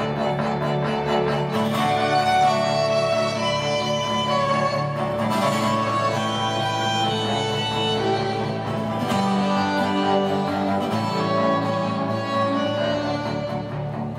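Live instrumental passage of bowed violins playing held, changing notes over acoustic guitar, with no singing.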